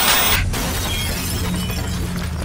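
Television static hiss, cut off sharply about half a second in, then a shattering, breaking sound effect over a low hum.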